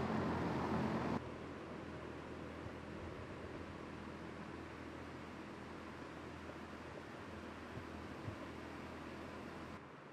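Steady rushing air noise of greenhouse ventilation fans, with a faint hum. It drops suddenly to a quieter steady level about a second in.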